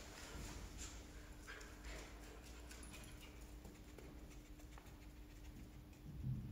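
Faint, irregular patter and light clicks of a small dog's paws and claws moving about on an artificial-turf floor, over a steady low hum.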